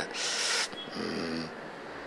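A man's audible intake of breath, close on a clip-on microphone, then about a second in a short, faint hummed hesitation sound.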